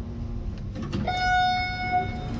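Elevator arrival chime: one steady electronic tone that sounds about a second in and is held for about a second as the car arrives at the floor.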